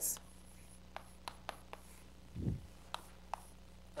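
Chalk writing on a blackboard: a handful of short, sharp taps and scratches as a few symbols are written. A brief low sound comes about halfway through.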